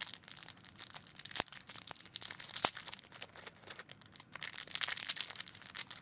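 Small clear plastic packaging crinkling and crackling as it is handled and pulled open by hand, with irregular sharp clicks and rustles.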